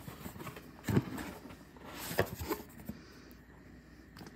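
Cardboard product box being opened by hand: a few soft knocks and a light rustle as the lid and flaps are lifted.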